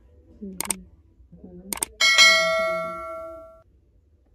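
Subscribe-button sound effect: two sharp mouse clicks about a second apart, then a bright bell ding that rings out for about a second and a half.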